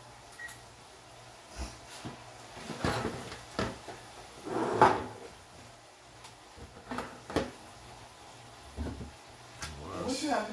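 Kitchen handling sounds: a string of knocks and clatters from cupboard doors and a metal baking pan being handled. The loudest is a longer rattle about five seconds in.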